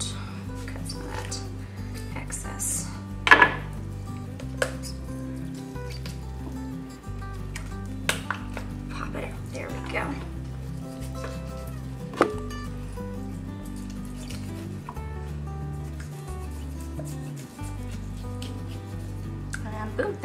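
Background music with a slow, shifting bass line, over a knife cutting raw chicken on a wooden cutting board. A handful of sharp knocks of the blade on the board stand out, the loudest about three and twelve seconds in.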